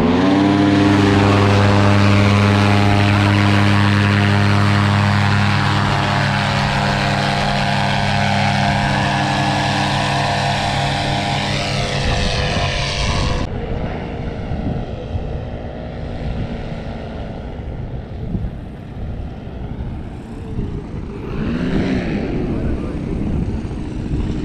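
Tandem paramotor's two-stroke engine and propeller opened up to full power for takeoff, a steady drone. About 13 seconds in it drops to a fainter, distant paramotor engine, its pitch wavering near the end.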